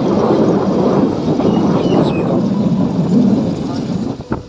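Loud, steady wind rumble buffeting the microphone as the camera travels along a road.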